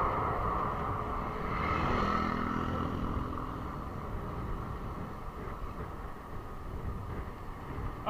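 Road and wind noise of a bicycle moving along a roadside, with a passing lorry's engine swelling about two seconds in and then fading away.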